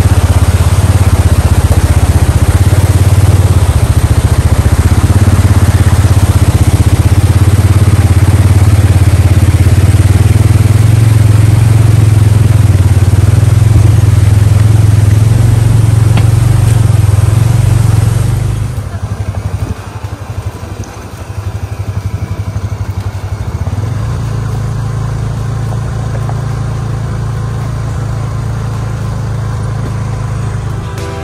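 Polaris Ranger 570 EFI side-by-side's engine running with a steady low drone, under the loud rush of a fast stream over rocks. About two-thirds of the way through, the rushing stops abruptly and the engine goes on more quietly.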